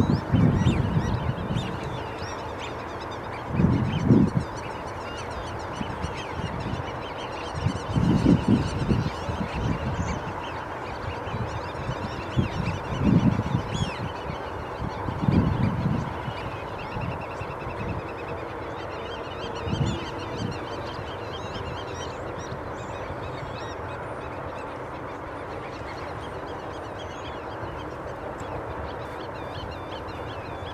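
Waterbirds honking in bouts every few seconds, dying away in the last third, over steady, fainter, higher-pitched birdsong.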